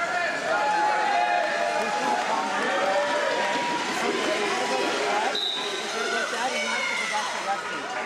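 Many overlapping voices of spectators and coaches talking and calling out in a large hall. About five seconds in comes a short, high whistle blast from the referee.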